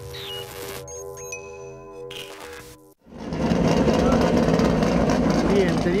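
A short musical transition of sustained electronic tones that cuts off suddenly about three seconds in. Then a loud, steady noise of midget race cars' engines running.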